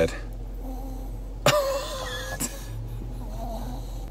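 French bulldog puppy whining: one sudden, high, wavering whimper about a second and a half in, lasting about a second, then a fainter one later. These are the saddest noises of a dog in a plastic cone that she hates wearing.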